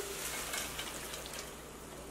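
Diced chicken thighs sizzling softly in a hot skillet, the sound slowly dying down as the burner has just been switched off.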